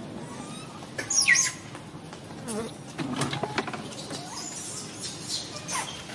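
Infant macaque squealing. The loudest is one sharp, high-pitched squeal that falls in pitch about a second in, and a few shorter, lower cries follow.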